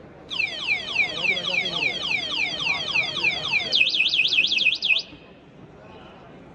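An electric motorcycle's anti-theft alarm siren set off from its remote: a run of falling whoops, about four a second, changing to a faster up-and-down warble before cutting off suddenly about five seconds in.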